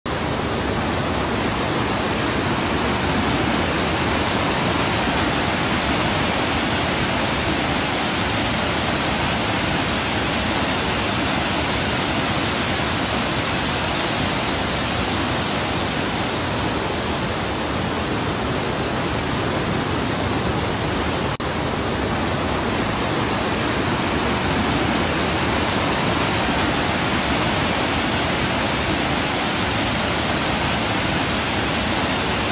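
Steady, even rush of heavy rain and fast-flowing muddy runoff water, with a brief dropout about two-thirds of the way through.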